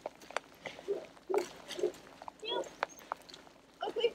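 Footsteps crunching on snow, a string of short ticks, with several short low vocal sounds scattered through.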